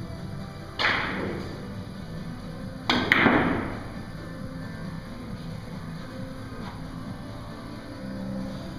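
Billiard shot on a Russian pyramid table: a sharp clack of the cue striking the ball a bit under a second in, then a louder double clack of heavy balls colliding about three seconds in, each trailing off briefly. Background music plays underneath.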